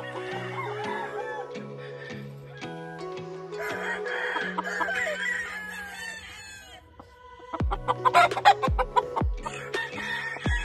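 A gamefowl rooster crowing, one long call starting about four seconds in and lasting about three seconds, over background music with steady notes and a beat that comes in near the end.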